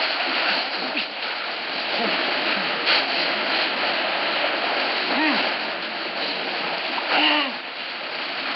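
A steady rushing water noise runs throughout, with short voice sounds about five seconds in and again about seven seconds in.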